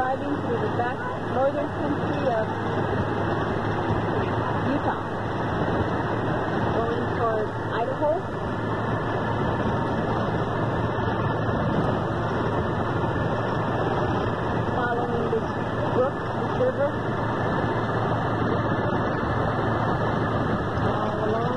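Steady road and engine noise heard inside the cab of a moving motorhome, with a low, even hum underneath.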